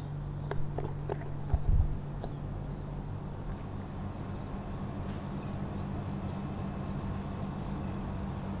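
Insects chirring in a high, steady drone, with faint pulsing calls joining in the middle; a low steady hum lies underneath. A couple of thumps come about a second and a half in.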